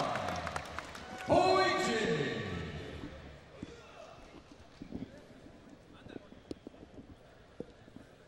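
A ring announcer's voice over the arena PA: one drawn-out call that falls in pitch about a second in, trailing off in the hall's echo, followed by quiet arena murmur with a few faint clicks.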